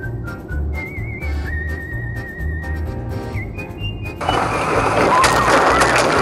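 Background music with a steady beat and a whistled melody. About four seconds in, a loud crash as the car's windshield is struck and shatters, the crunching noise lasting about two seconds.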